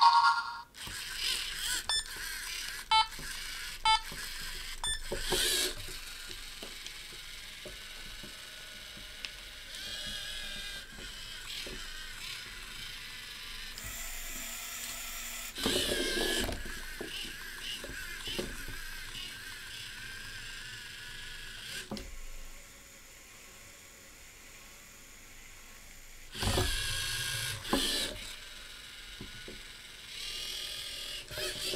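LEGO Mindstorms EV3 robot's servo motors and plastic gears whirring as it drives along the line, turns and works its arm, with a few short beeps near the start and louder spells of gear noise about halfway and near the end.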